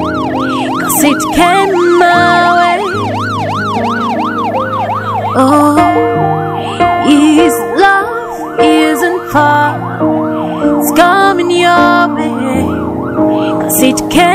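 Police siren wailing in quick rise-and-fall sweeps, about two a second, over background music with sustained chords.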